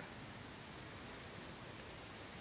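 Faint steady hiss of background noise, with no distinct event standing out.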